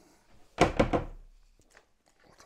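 A hard plastic tool case and its contents knocking as they are handled: a quick cluster of thunks about half a second in, followed by a couple of faint clicks.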